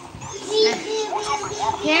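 A young child's voice vocalising without clear words, with a high rising cry near the end.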